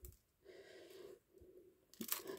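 Near silence: room tone, with only a faint soft sound for about half a second near the middle.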